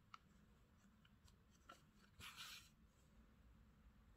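Near silence with faint handling noises from hand-sewing yarn into crocheted fabric: a small click just after the start and a brief soft rustle a little past two seconds in.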